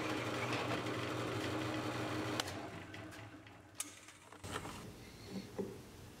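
Drill press running steadily as it bores out mortise waste in a sapele leg, then going quiet about two and a half seconds in; a few light taps near the end.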